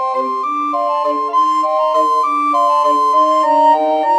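Computer-generated recorder quartet playing a four-part arrangement: clear, steady tones with a high melody moving over three lower parts, the notes changing several times a second at an even moderate pace.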